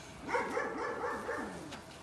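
A quick run of about five short, high-pitched animal yelps, each dipping in pitch.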